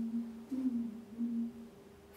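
A person humming a short low phrase: three held notes, the middle one bending briefly higher, ending before the last second. A faint steady hum sits underneath.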